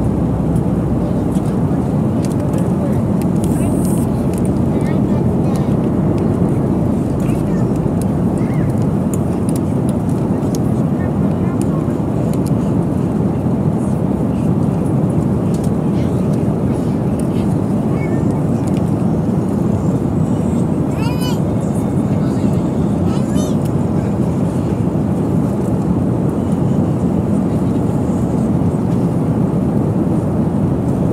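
Steady airliner cabin noise in flight: engine and airflow noise, deep and even, at a constant level.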